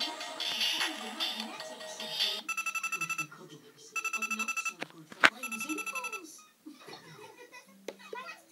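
An electronic Deal or No Deal tabletop game plays its tinny tension music while it calculates. The music gives way to three bursts of a rapid trilling telephone ring, the banker's call announcing the bank offer, with a sharp click just before the third ring.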